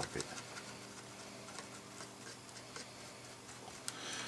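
Faint ticking and scratching of a stiff, trimmed bristle brush scrubbing surgical spirit over the bare solder pads of a circuit board, over a steady low hum. A sharp click comes near the end.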